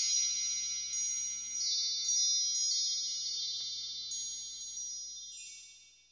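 Intro sting of shimmering, bell-like chime tones ringing high and sustained, with a scatter of quick bright pings over them, slowly fading away near the end.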